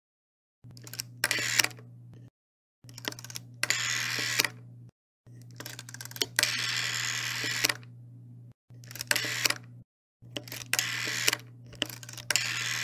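Rotary telephone dial being turned and let go, over and over: a run of clicks, then a brief whirring as the dial spins back, over a steady low hum. There are five such passes, with short silent gaps between them.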